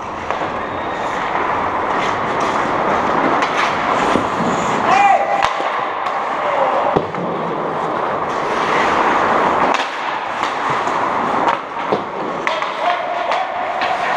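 Ice hockey play: skate blades scraping and carving on the ice, with many sharp clacks of sticks and puck and brief shouts from players. A short call rises and falls about five seconds in.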